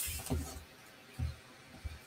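Quiet handling sounds: two soft low bumps, about a second apart, as small paper pieces are handled on a craft mat.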